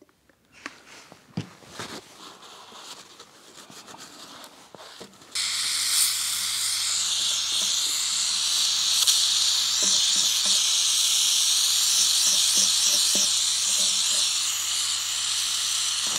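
Gas brazing torch burning with a loud, steady hiss while a tube is hard-soldered onto a steel coolant overflow reservoir. The hiss starts suddenly about five seconds in, after a few faint handling clicks, and has a low hum under it.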